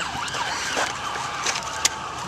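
Emergency vehicle siren wailing and fading out over steady outdoor street noise, with a sharp click near the end.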